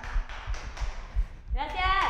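A short pause in a man's speech, with a few faint hand claps; his voice comes back near the end.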